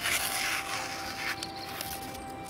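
A freshly sharpened Fällkniven A1 Pro knife slicing through a sheet of paper in a sharpness test: a brief papery hiss in the first second, then fainter rustling of the paper.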